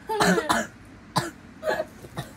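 A girl coughing: three or four short, sudden coughs.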